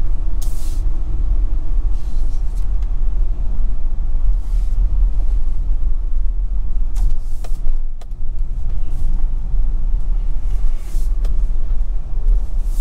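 Steady low rumble of a vehicle driving along a rough, potholed country road, with a few sharp knocks and rattles about two-thirds of the way in.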